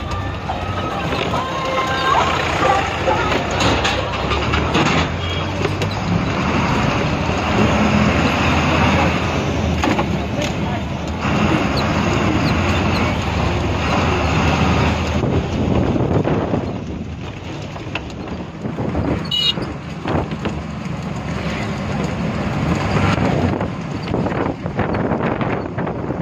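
An MSRTC Ashok Leyland ordinary bus running along the road, heard from inside: a steady diesel engine hum with road and window noise, and voices mixed in.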